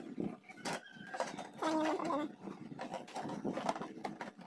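Hard plastic clicking and knocking as a stacked plastic vegetable container is handled and its lid turned. About one and a half seconds in, a short pitched squeal lasts about half a second.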